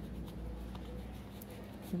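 Pen writing on paper, a faint scratching over a low steady room hum.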